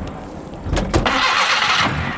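A taxi's car engine starting and running. It comes up about three-quarters of a second in, with a couple of sharp clicks, then runs steadily.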